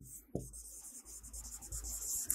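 Marker pen writing on a whiteboard: a faint rapid scratching of the tip across the board, strongest in the first second, over a low hum.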